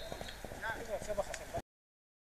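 Pitch-side sound of an amateur football match: faint shouting voices of players and scattered short clicks over a low hum, cutting off abruptly to silence about a second and a half in.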